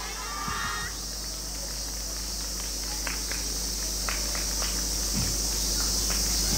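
Cicadas buzzing, a steady, high-pitched chorus that slowly grows louder, with a few sharp clicks around the middle.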